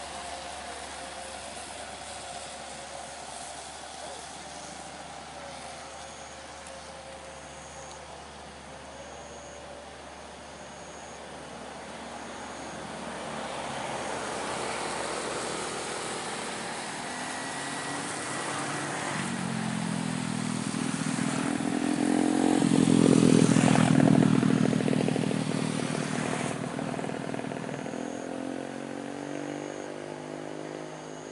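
Road traffic on a steep hill road. A heavy truck's diesel engine grows steadily louder to a peak about two-thirds of the way through as it passes close by, then fades away. Scooters also pass.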